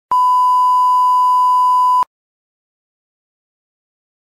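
A single electronic beep: one unchanging high tone held for about two seconds, cutting off suddenly.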